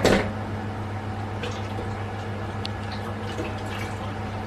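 Steady low electrical hum from an electric cooktop heating a stainless steel stockpot of water, with a few faint small ticks. A short, loud knock comes right at the start.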